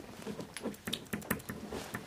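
Quiet, irregular light clicks and taps of small objects being handled at a table, a few a second.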